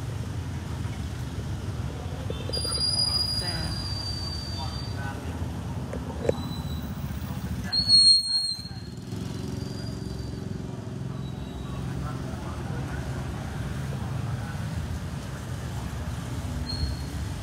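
Steady low vehicle rumble with voices in the background. A high, thin tone sounds for about two and a half seconds starting about two seconds in, and a shorter, louder one comes about halfway through.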